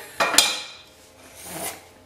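A spatula scraping and clinking against a ceramic plate: a sharp scrape about a quarter second in that fades, then a fainter rub about a second and a half in.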